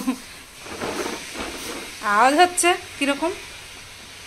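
A woman's voice saying a few words about two seconds in, with faint rustling and scraping of a taped cardboard parcel box being handled before it.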